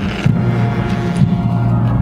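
Military band playing a march, with sustained low brass notes that change pitch and a drum beat about once a second.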